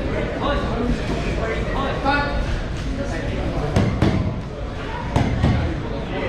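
Steady crowd chatter in a large gym hall with a short shout about two seconds in. Four sharp thuds, in two quick pairs near the middle, come from the boxers in the ring: gloved punches landing or feet on the ring canvas.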